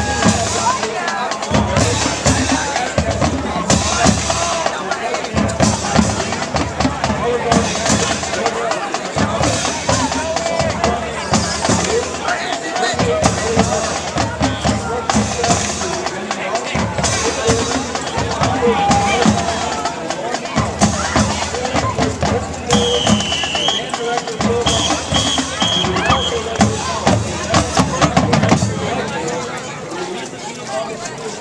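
Marching band playing, with bass drums and snare drums prominent; the music stops near the end.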